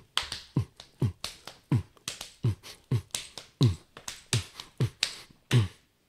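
Hip-hop drum beat without vocals: a deep kick drum that drops in pitch on every hit, about three hits a second, with hissing snare or hi-hat hits over it.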